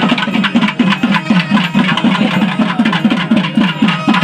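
Music with a fast, steady drumbeat and a few held tones.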